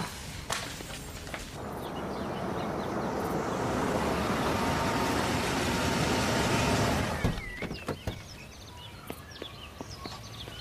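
A motor vehicle's noise growing louder for a few seconds, then cutting off abruptly about seven seconds in, with a few small clicks after.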